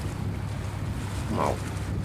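Wind buffeting the microphone over a choppy sea, with a low steady rumble underneath. A single short spoken word cuts in about a second and a half in.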